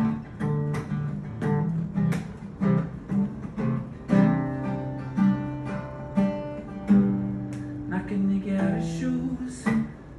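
Acoustic guitar played solo in an instrumental break: sharp strummed chord strokes about twice a second, with some chords left ringing for longer in the middle.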